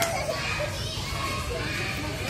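Indistinct chatter of young children mixed with adults' voices, over a steady low hum.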